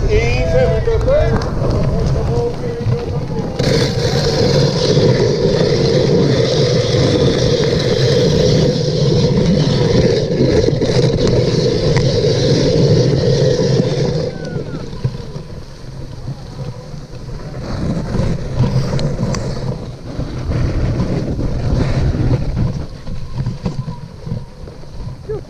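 Dog sled moving fast over packed snow: a steady rushing hiss of the runners and wind on the microphone, loudest for the first half and dropping off about fourteen seconds in. A few short calls at the very start.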